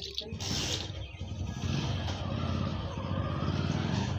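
A motor vehicle's engine rumbling steadily for about three seconds, after a short breathy burst near the start.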